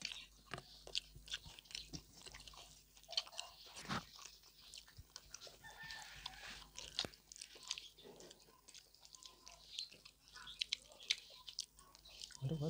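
Close-up eating sounds of pork belly and rice: chewing with many short, sharp, irregular wet smacks and clicks.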